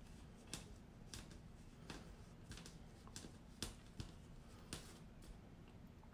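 Near silence with faint, irregular small clicks and handling noise from a sequined knitted i-cord being pulled and adjusted by hand on a tabletop.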